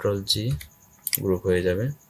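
Mostly a man speaking, with a few short clicks from the computer between his words, about half a second to a second in.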